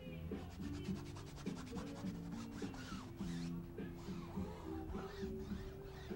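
Chalk rubbed and scratched across a large canvas: a quick run of fine scratches, then longer rubbing strokes around the middle. A melodic line of low guitar notes plays under it.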